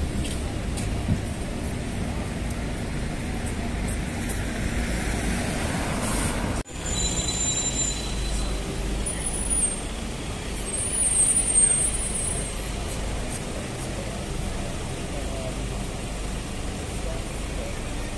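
Busy city street traffic: a steady rumble of passing road vehicles. A thin, high-pitched squeal comes and goes from about seven to twelve seconds in, loudest near eleven seconds. The sound drops out sharply for an instant at about six and a half seconds.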